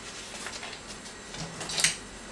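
Paper wrapper of a block of butter rustling faintly as it is peeled back by hand, with one louder crinkle near the end.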